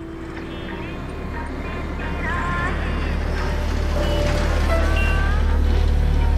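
Busy city ambience with a deep, steady traffic rumble that grows steadily louder. Short chirping calls, some rising in pitch, sound over it about two seconds in and again near the end.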